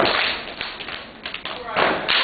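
A step team's sharp hand claps and foot stomps in a quick run through the second half, after a noisy burst at the start fades away.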